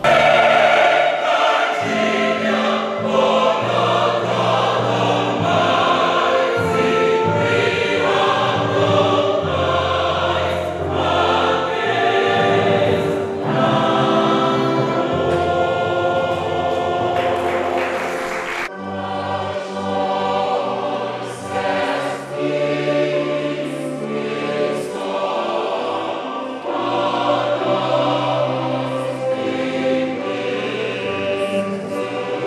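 Mixed church choir singing a gospel song, with held chords over a steady bass line. There is an abrupt cut about two-thirds of the way through, after which the singing carries on.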